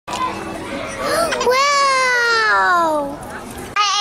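A young child's voice: a few short sounds, then one long high call that slides steadily down in pitch for over a second. A children's jingle starts just before the end.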